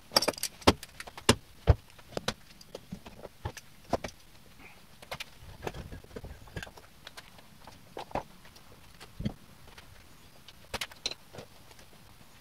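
Irregular sharp knocks, clicks and clatter of a person handling tools and materials at a workshop bench, densest in the first two seconds and again briefly near the end.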